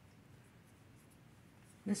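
Near silence: quiet room tone with a few faint rustles, and a woman's voice only at the very end.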